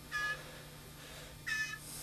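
Fledgling blue jay giving two short begging calls, a little over a second apart, while being hand-fed.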